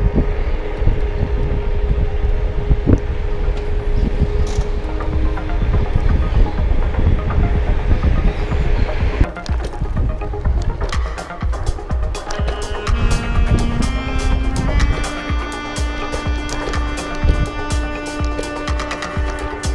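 Wind and road rumble on the microphone of an electric scooter riding along a street, under background music; about halfway through, the rumble drops a little and the music comes forward with a steady beat.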